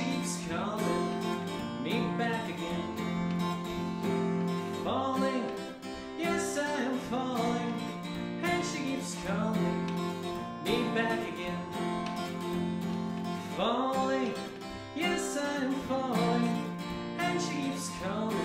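Acoustic guitar strummed in a steady, brisk rhythm, with a man singing along in phrases every few seconds.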